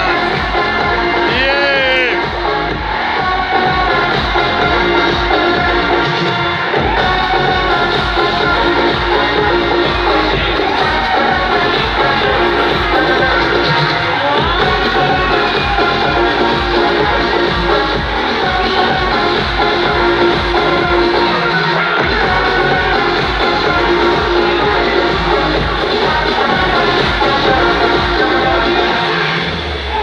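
Loud amplified live music from a stage sound system, with a steady deep bass.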